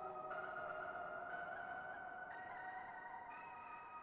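Quiet ambient synthesizer background music: long held notes, with a new note entering about once a second, slowly fading.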